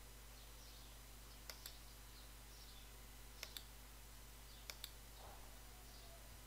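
Computer mouse clicked three times over near silence, each click a quick pair of faint ticks.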